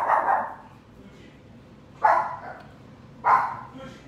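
Pet dogs barking in short single barks: one dying away at the start, another about two seconds in, and a third about a second later.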